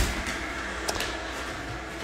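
Room tone: a steady background hum in a pause, with a couple of faint clicks about a second in.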